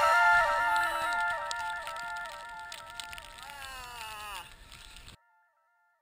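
Electronic music dying away: a synth melody of stepped notes fades steadily, its notes sag downward in pitch about three and a half seconds in, and it cuts off about five seconds in.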